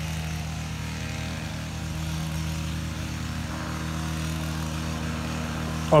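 A steady engine hum at an even speed, with no revving.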